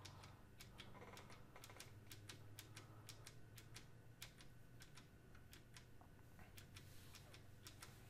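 Faint clicking of computer keys, several irregular taps a second, over a low steady hum.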